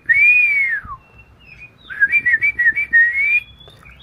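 Oriental magpie-robin (kacer) singing loud, clear 'ngeplong' whistles: one long arched note that drops away about a second in, then a warbling phrase of quick rising and falling whistles.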